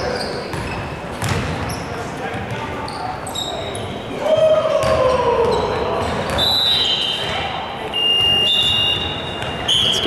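Indoor basketball game in a large, echoing gym: the ball bouncing on the hardwood, players calling out, with a loud falling shout about halfway through. Sneakers squeak on the court several times in the second half.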